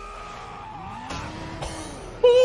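Battle sound from the anime episode playing quietly: a steady rumble with slowly gliding tones and two short sharp hits about a second in and a little later.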